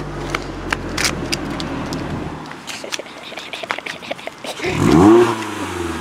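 A steady low engine hum with a few clicks stops abruptly about two seconds in. Near the end a Scion tC's four-cylinder engine is revved hard, climbing sharply in pitch and dropping back, the loudest sound here.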